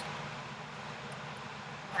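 Steady low hum and hiss of room tone.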